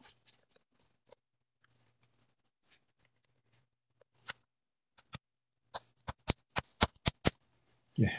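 Small sharp clicks and light rubbing of a plastic carpet-gripper fastener being pressed by hand into a hole in a car floor mat, with a quick run of about ten clicks near the end.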